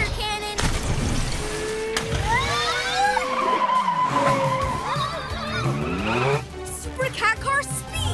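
Cartoon race-car sound effects: engines running with a rushing noise as the vehicles speed along, one engine note rising slowly over a few seconds, over background music.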